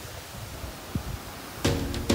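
Low rumble of wind on the microphone with one soft thump about a second in; near the end, background music with plucked notes comes in and is the loudest sound.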